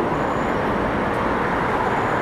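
Steady city traffic noise: an even hum of road vehicles.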